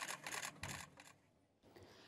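Faint, rapid clicking of camera shutters, several clicks in about the first second, then near silence.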